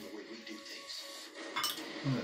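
A metal spoon clinking against a small bowl, with one sharp clink about one and a half seconds in.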